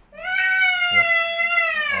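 An infant crying: one long, high wail that holds a steady pitch and falls slightly as it ends.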